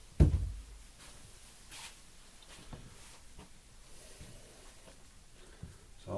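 A single dull thump just after the start, then faint scattered clicks and light taps as the dice are handled and gathered on a felt-covered craps table.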